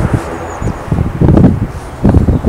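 Wind buffeting the microphone: a gusty low rumble that swells and dies away, loudest around the middle.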